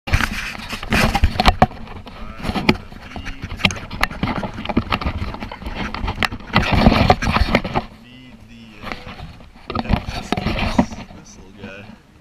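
Handling noise from a GoPro camera held in the hand: repeated knocks, bumps and scrapes against the camera body, loudest in the first eight seconds, with muffled voices under them.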